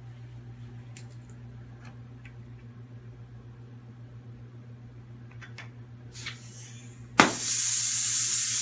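Faint handling clicks on the scuba regulator and tank valve, then a short hiss and a sudden loud pop about seven seconds in, followed by a loud steady high hiss of air escaping at the regulator's yoke connection. This is the sign of a blown O-ring, which the instructor puts down to the yoke nut being too loose.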